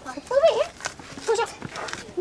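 A young child's high-pitched voice making two short wordless calls, with a few faint ticks between them.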